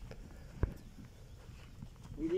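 Faint, low wind rumble on the microphone, with one sharp thump just over half a second in.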